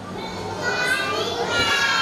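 A group of young children's voices in a classroom, several at once, some sounds drawn out.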